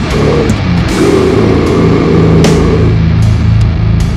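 Slam/brutal death metal: heavily distorted guitar riffing over drums, with crashes about half a second and two and a half seconds in.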